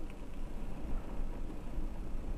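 Low steady rumble of an idling vehicle engine, heard from inside a stationary car's cabin.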